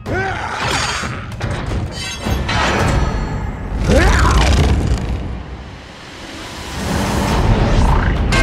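Action-film battle soundtrack: dramatic score mixed with heavy booms and crashes of a giant-robot fight. About four seconds in there is a sharply rising screech, and the soundtrack drops briefly before swelling loud again near the end.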